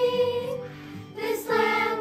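Children's choir singing together, holding a long note that dies away a little past halfway, then starting the next phrase after a short break.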